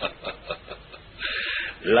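A man chuckling softly in a run of short pulses, then a breathy hiss, like a sharp exhale, a little past halfway.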